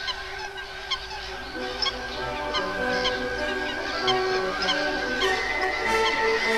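A flock of waterbirds calling, short repeated calls a few times a second, over background music with held tones.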